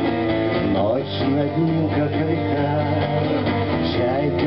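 A man singing to his own strummed acoustic guitar in a live performance, the guitar chords steady under a bending vocal line.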